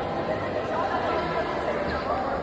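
Chatter of several people talking at once, their overlapping voices blending with no single clear speaker.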